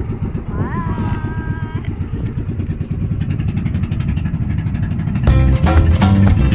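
Outrigger bangka boat's engine running steadily with a fast, low chugging. A voice calls out briefly about a second in, and music starts near the end.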